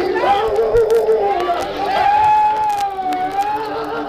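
Preacher's voice in sung, chanted preaching, bending between pitches and holding one long note through the middle, with congregation voices behind.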